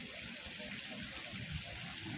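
Steady, faint hiss of running water, with faint distant voices murmuring underneath.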